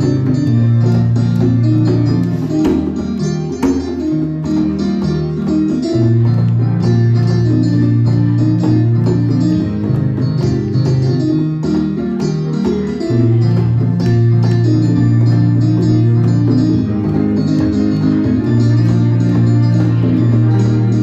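Live jam on a Korg keyboard: chords over long held bass notes, with hand-played congas tapping along.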